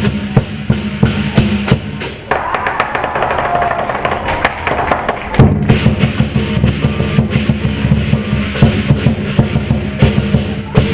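Lion dance percussion: a Chinese drum pounding with cymbals clashing, loud and continuous. About two seconds in, the deep drum beats drop out for about three seconds under brighter crashing, then return at full weight.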